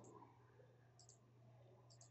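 Near silence with two faint computer mouse clicks, about a second in and near the end.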